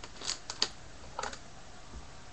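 Hands opening the wrapping of a sealed trading-card box: three sharp clicks and crackles close together, then a short rattle of clicks just after a second in.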